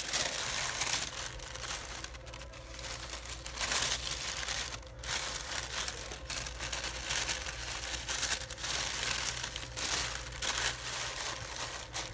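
Pink tissue paper crinkling and rustling on and off as it is folded over and wrapped around a small package by hand.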